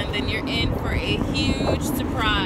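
Children's high-pitched vocal sounds, a few short calls and a rising squeal, over the steady low rumble of a car cabin.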